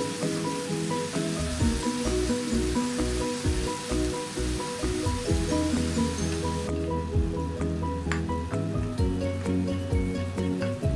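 Cabbage, carrots and minced chicken sizzling in a frying pan as they are stirred with a wooden spatula, under background music. The sizzle cuts off suddenly about two-thirds of the way through, leaving the music and a few clinks.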